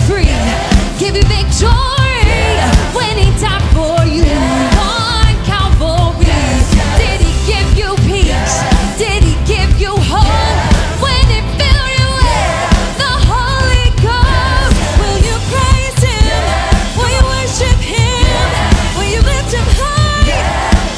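Live worship band and singers performing an upbeat call-and-response song: a lead singer sings lines and a group of backing singers answer 'yes', over a band with a steady beat.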